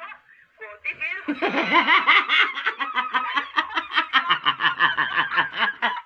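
A woman laughing hard: after a brief pause, a long unbroken run of rapid ha-ha-ha laughter begins about a second in and goes on without a break.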